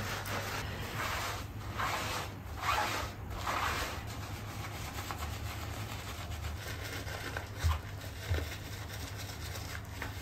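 Shampoo-lathered wet dog fur being scrubbed with a rubber bath glove: a run of half-second rubbing strokes in the first few seconds, then softer steady rubbing, with two brief low thumps later on. A low steady hum runs underneath.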